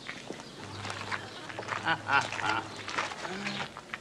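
Ducks quacking, a few short calls in quick succession from about halfway through, over a low steady hum.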